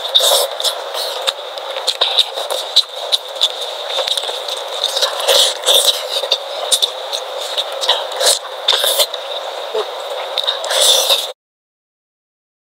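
Close-miked eating sounds: wet chewing and mouth noises mixed with the crinkle of plastic gloves and sauce-coated food being pulled apart by hand, a dense run of short clicks and smacks. The sound cuts off abruptly about a second before the end.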